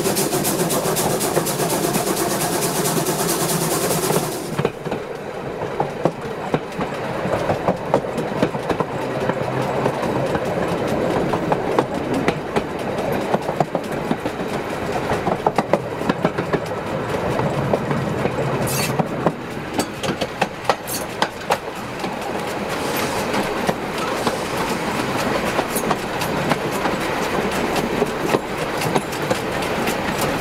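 Wheels of a narrow-gauge goods wagon rolling downhill on the rails, heard close up from beneath the wagon: a steady rumble with rapid, irregular clicks and knocks from wheels and rail joints. A loud hiss runs over it for the first four seconds or so, then cuts off.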